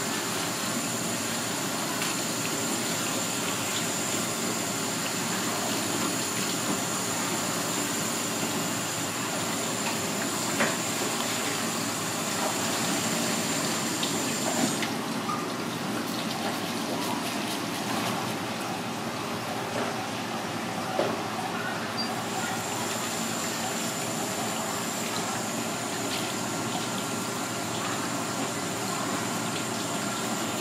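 Tap water running steadily from a hose onto a raw fish fillet and a plastic cutting board as the fillet is rinsed by hand. Around the middle, quick scraping strokes of a handheld scaler across the fillet.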